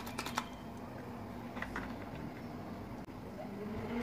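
Trigger spray bottle spritzing water in quick repeated strokes, stopping about half a second in. Then a couple of light handling sounds over a steady low hum.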